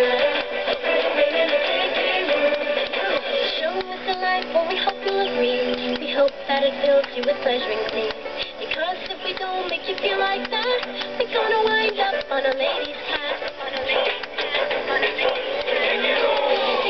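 A song with singing played through small desktop speakers, thin and tinny with almost no bass.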